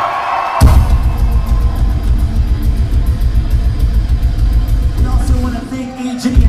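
Live rock band playing a loud sustained burst, heavy bass rumble with rapid drum and cymbal hits, which starts suddenly about half a second in and drops away near the end.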